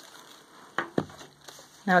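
Paper and card rustling as a handmade junk journal is opened and its pages handled, with a couple of soft taps about a second in.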